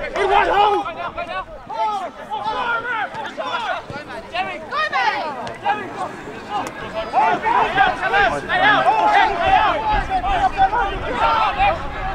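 Several raised voices shouting and calling over one another, with a background of crowd chatter.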